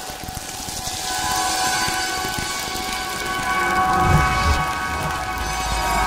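Station-ident sound design under an animated logo bumper. A hissing wash with held chord tones swells up over the first second, and a deep rumble builds in from about four seconds in.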